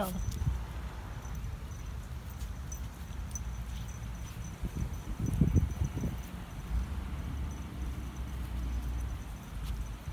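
A steady, high insect chirring over a low rumbling background noise, with a short louder rumble about five seconds in.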